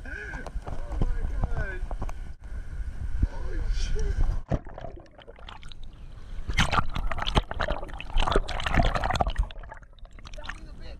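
Seawater splashing and sloshing around a GoPro in its waterproof housing as the camera is dipped into shallow water among rocks. It is loudest in the second half, with a dense run of splashes.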